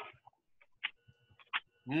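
A pause in talk on an online call: the end of a spoken word, then a mostly quiet stretch with a few faint short sounds, and a voice saying "mm-hmm" near the end.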